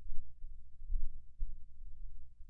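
Low, muffled thumps and rumble, with a faint steady hum underneath.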